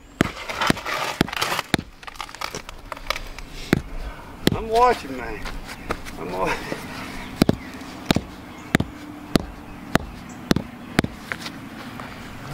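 A rubber mallet tapping a concrete landscape block to bed it level in a dry concrete-mix base: a run of short knocks, more regular and about one to two a second in the second half. Near the start the block and grit crunch and scrape as gloved hands push it into place.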